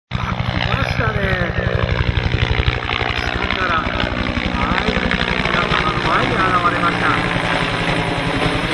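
UH-1J helicopter flying by, its two-bladed main rotor beating in a fast, steady rhythm of about ten beats a second.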